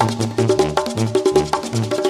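Mexican banda brass band playing live in an instrumental stretch between sung lines. A low bass line steps between notes under held brass chords, with quick, steady percussion strokes.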